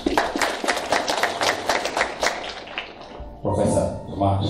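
Audience applauding, a quick patter of many hand claps for about three seconds, then a brief burst of voice-like sound near the end.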